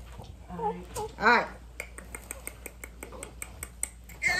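A short voice sound, then a rapid run of light, sharp clicks, about seven a second, through the second half.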